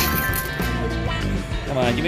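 A video slot machine's electronic game music and chiming tones, played as the reels spin.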